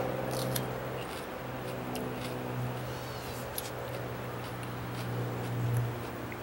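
A steady low hum with a few even overtones, swelling slightly in the middle and near the end, with a handful of faint, scattered clicks over it.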